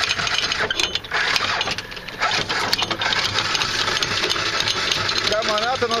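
Anchor chain running out through a sailboat's electric anchor windlass: a steady metallic clatter of links over the gypsy and down the hawse, as the anchor is let go into about 13 metres of water.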